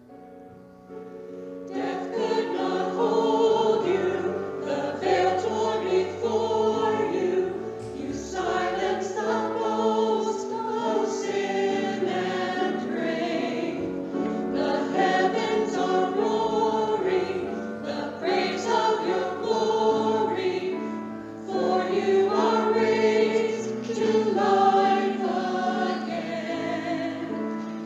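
A choir singing a worship song with accompaniment, fading in over the first two seconds and then carrying on at a steady level.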